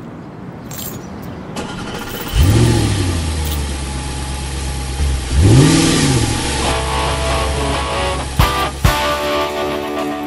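Car engine started with the ignition key about two seconds in, flaring up and settling to a steady idle, then revved once briefly about five seconds in. Guitar music comes in near the end.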